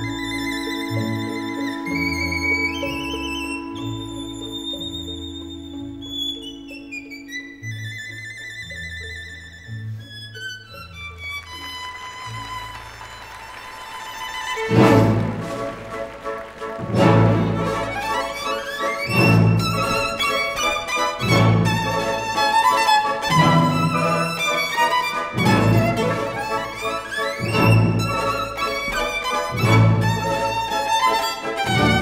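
Violin playing a virtuoso classical passage: fast runs climbing and falling over a long held low note. From about halfway come loud, heavy low accents roughly every two seconds, under continuing rapid figures.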